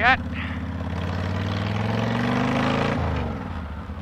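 Honda VTX 1300S V-twin cruiser engine pulling under acceleration while riding, its note rising steadily in pitch and then dropping sharply about three seconds in. Wind rushes over the microphone.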